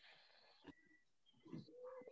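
Near silence: a faint hiss in the first part, a soft click, then a few faint, brief tones near the end.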